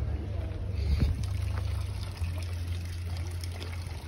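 Sewage water trickling in a small open ditch, under a steady low rumble.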